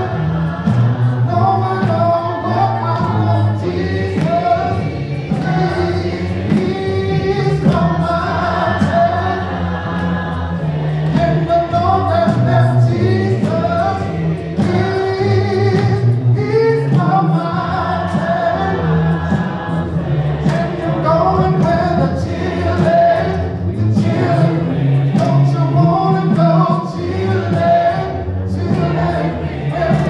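Gospel singing by a group of voices, with a man's voice leading through a microphone.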